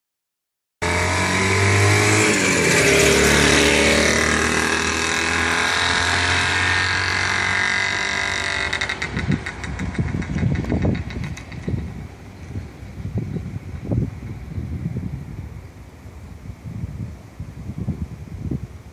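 Izh two-stroke sidecar motorcycle riding up and passing close by, its engine loud for the first several seconds and dropping in pitch as it goes past. It then fades away by about nine seconds in, leaving irregular low thumps.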